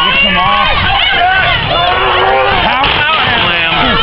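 Ringside crowd shouting and chattering, many voices at once, with no single voice standing out.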